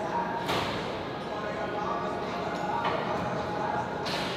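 Gym ambience in a large hall: indistinct background voices over a steady hum, with two short bursts of hiss about half a second and three seconds in.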